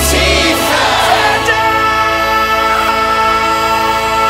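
Choir and orchestra from a musical-theatre recording holding a sustained chord. A deep low drone cuts off shortly after the start.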